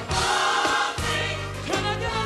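Gospel choir singing full-voiced over a live band, with held bass notes underneath; the bass changes note about halfway through.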